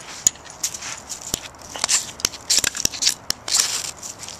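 A steel striker scraped hard and fast, again and again, along a magnesium fire starter's rod to throw sparks into tinder: a run of irregular short, bright rasps, a few of them longer.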